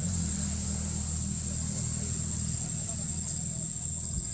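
Outdoor ambience: a continuous high-pitched insect drone over a steady low rumble, with faint voices in the background.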